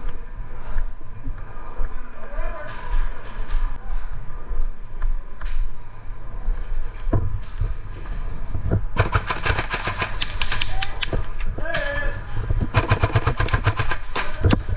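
Airsoft guns firing rapid strings of shots, starting about nine seconds in, pausing briefly, then firing again near the end, over a low background rumble with faint distant voices.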